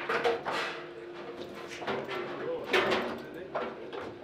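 Table football in play: several sharp knocks of the hard ball being struck by the rod figures and hitting the table, as a goal is scored.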